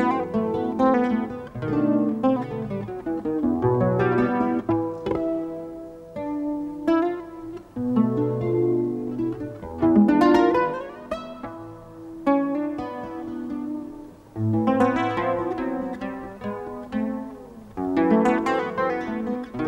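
Acoustic guitar fingerpicked in an instrumental passage: runs of single notes that ring and die away, broken by fuller chords struck about ten seconds in and again near fifteen seconds.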